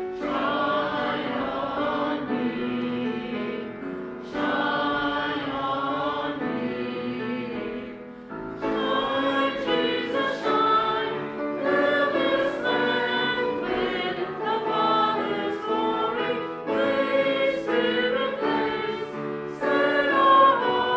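Congregation singing a hymn together, in sustained phrases with short breaks between lines.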